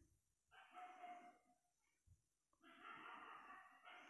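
Near silence, broken by two faint background sounds about a second long each: one shortly after the start, the other near the end.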